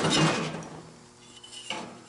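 A steel angle-iron piece being handled against the go-kart's metal frame: a short metallic scrape and rattle at the start that dies away, then a light click near the end.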